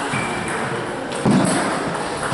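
Table tennis balls clicking off tables and paddles around a busy hall. A louder, duller thump comes about a second and a quarter in.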